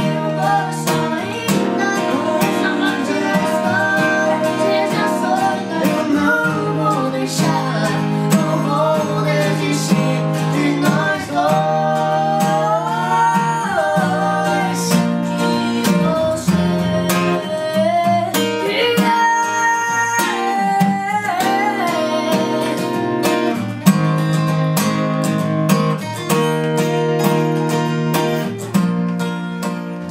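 Steel-string acoustic guitars strumming chords while male voices sing the melody, in a live acoustic song performance.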